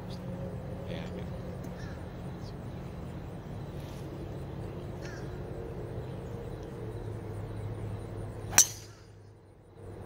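A driver striking a golf ball off the tee: one sharp crack about eight and a half seconds in, the loudest sound, over a steady low hum.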